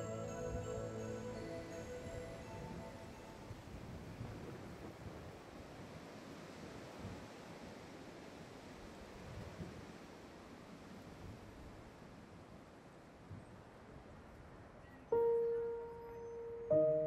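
Soft background music with sustained notes that fade out over the first few seconds, leaving a faint steady outdoor street hum; a new music note starts about a second before the end.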